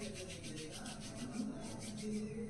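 Palms rubbing quickly back and forth, rolling a cotton wick for an oil lamp, in rapid even strokes of about six a second.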